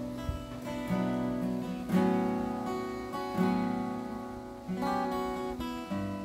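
Solo acoustic guitar playing a song's instrumental opening: about five chords struck roughly once a second, each left to ring out and fade before the next.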